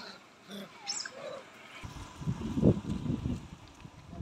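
A few short high chirping calls, then from about two seconds in an irregular low rumbling of wind buffeting the microphone, which becomes the loudest sound.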